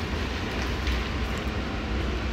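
Steady low rumble with a hiss over it and no distinct events: background room noise picked up by a moving handheld microphone.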